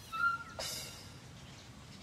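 A small cartoon creature's brief, squeaky vocal sound near the start, followed by a faint, quiet stretch.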